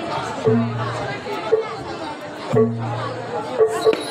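Jaranan accompaniment music, with a deep note repeating about every two seconds, under loud crowd chatter.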